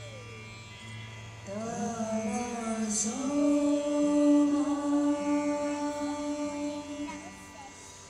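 Live Indian devotional music: a voice sings long held notes that glide up into pitch, over a low drone that fades after the first couple of seconds. A short bright metallic strike sounds about three seconds in.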